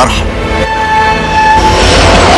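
Train horn sounding one steady held note of about a second, over trailer music. A louder rushing noise builds near the end.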